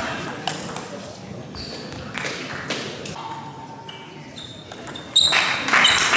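Table tennis balls clicking off bats and table, with short high pings, in a large sports hall. About five seconds in, loud applause starts.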